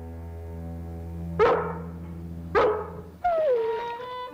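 A dog barking twice, about a second apart, over a sustained chord of background music; near the end a falling, sliding tone comes in.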